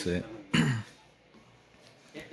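A man clears his throat once, about half a second in: a short rough burst that drops in pitch. Then it is nearly quiet.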